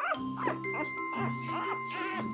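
Newborn golden retriever puppy squeaking and whimpering, a string of short rising-and-falling cries about three a second, over soft background music with held notes.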